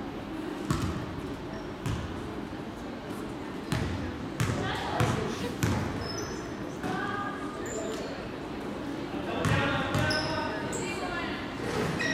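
A basketball dribbled and bouncing on a hardwood gym floor: irregular sharp bounces that echo in the large gym, over a low murmur of players' and spectators' voices.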